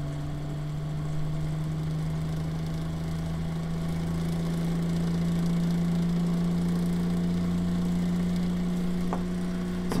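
Bedini motor with a six-magnet ferrite rotor running, its pulsed coil making a steady hum. The hum rises slightly in pitch and grows a little louder over the first half as the rotor is tuned back up to speed, then holds steady.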